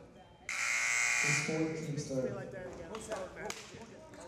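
Basketball gym buzzer sounding once: a buzz that starts abruptly about half a second in and lasts about a second, followed by scattered voices in the gym.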